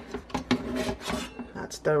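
Rice cooker's inner pot scraping and rubbing against the cooker housing as it is lifted out: a run of short, irregular scrapes and light knocks.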